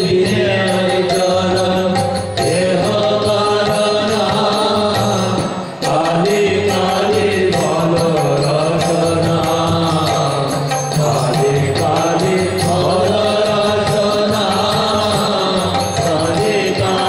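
Devotional kirtan: voices chanting a hymn to the goddess Kali over a steady harmonium drone, with violin accompaniment.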